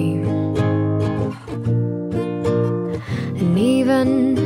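Acoustic guitar strumming chords in a pop song, in a short gap between sung lines.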